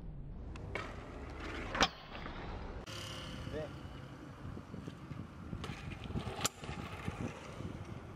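A BMX bike's sharp landing impacts on concrete, the loudest a slam about two seconds in and another sharp clack near the end, over a steady hum of street traffic.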